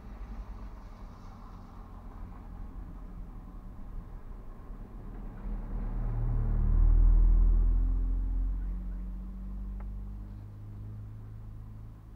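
A motor vehicle's engine passing close by, heard from inside a parked car: a low rumble that swells to its loudest about seven seconds in, then fades away.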